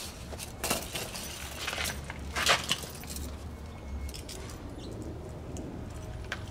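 Bare copper ground wire scraping and small metal anchor pieces clinking as the wire is threaded and pulled through them by hand: a few light, sharp clicks, the loudest about two and a half seconds in, over a steady low rumble.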